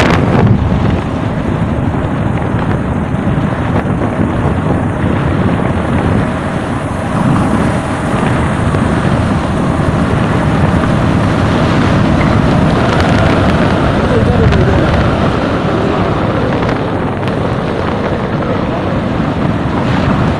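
Wind buffeting the microphone of a moving vehicle, over the steady engine and tyre noise of the vehicle driving along a hill road.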